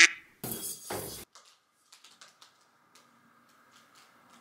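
A short exclamation, then a brief rustling scrape of a cardboard box and the plastic-wrapped rolled mattress inside it being handled, followed by a few light scattered clicks and taps.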